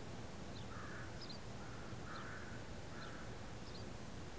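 Birds calling: four harsh, noisy calls in the middle, with short high chirps repeating about once a second.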